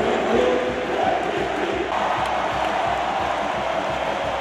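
A large basketball arena crowd singing and chanting together, with cheering.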